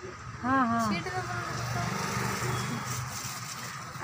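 A voice speaks briefly near the start, then a steady low hum with a light hiss runs on underneath.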